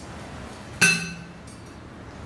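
A single sharp clink with a short ring, about a second in: a kitchen knife striking the plate under a head of broccoli as its florets are cut off.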